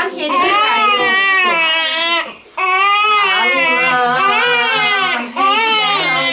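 Newborn baby crying in long, high, wavering wails, broken by short breaths about two and a half seconds and five seconds in.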